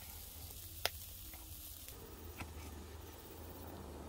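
Pork tomahawk chops sizzling faintly on a charcoal grill. Two sharp clicks of metal tongs on the grate come about a second in and again a second and a half later.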